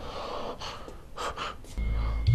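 A man breathing in short, audible breaths. Music with a deep bass comes in near the end.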